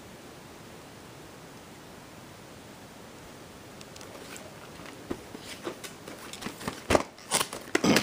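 Plastic VHS tape cases being handled and picked up. There is faint steady hiss at first, then soft clicks and taps from about halfway, ending in a few louder sharp plastic clacks.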